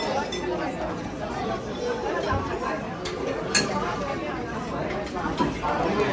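Background chatter of many diners talking at once in a busy restaurant, with a single sharp click about three and a half seconds in.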